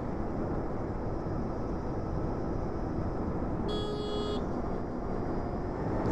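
Steady wind rush and tyre-on-road noise from a Zero SR electric motorcycle riding at speed, with no engine sound. About four seconds in, a brief high tone sounds for under a second.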